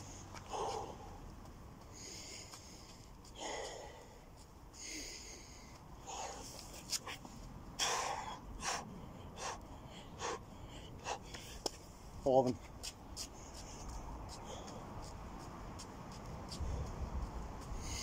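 A man breathing hard while doing burpees with push-ups: short, sharp breaths out roughly every second, with a short grunt about twelve seconds in.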